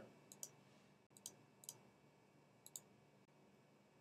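Faint computer mouse clicks in near silence, four quick pairs of clicks spread over the first three seconds.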